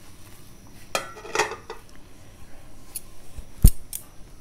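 Kitchenware handling as glutinous-rice dough balls are tipped from a plate into a saucepan: sharp clinks and scraping of the plate against the pot about a second in, a small click later, and a heavy thump shortly before the end.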